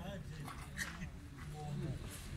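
Men's voices talking in the background, with a brief high-pitched yelp-like sound a little before the middle.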